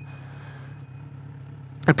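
Kawasaki Z900RS inline-four engine running steadily at cruising speed, a low even drone with a faint rush of wind.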